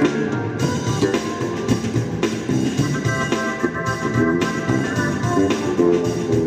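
Funk jam on a Yamaha MOX synthesizer keyboard, with an organ-like sound, and an electric bass guitar playing together over a steady drum beat.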